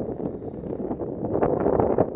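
Wind buffeting the microphone as a low, gusty rumble that swells near the end.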